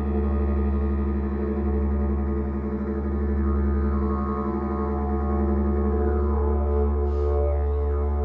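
Didgeridoo played as one continuous low drone, its overtones shifting and sweeping with the player's mouth about three quarters of the way through. A short hiss sounds near the end.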